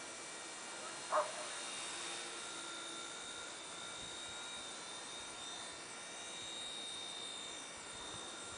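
Blade mCP X V2 micro RC helicopter flying at a distance: a faint, steady high-pitched electric whine, with a brief rise and fall in pitch near the end. A single short, sharp sound about a second in is the loudest thing heard.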